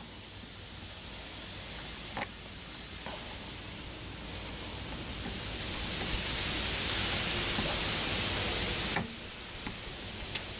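Air hissing out of a punctured tubeless car tyre around a screw being turned out of the tread with pliers. The hiss grows louder over several seconds and stops suddenly about a second before the end. A sharp click of the pliers on the screw comes about two seconds in.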